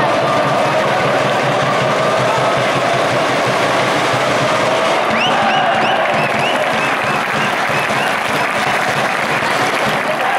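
Stadium crowd of football supporters clapping, with a held murmur of many voices beneath. From about halfway through, a run of short, high-pitched rising notes sounds over the clapping.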